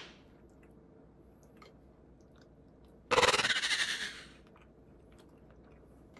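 A person chewing crunchy fried chicken fries with faint clicks and crunches, then about three seconds in a loud rushing burst lasting about a second.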